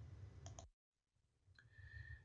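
Near silence, with a faint short click about half a second in and a faint brief tone near the end.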